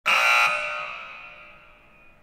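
A single buzzer-like electronic tone with several pitches at once. It starts abruptly, holds loud for about half a second, then rings away, fading steadily to nothing.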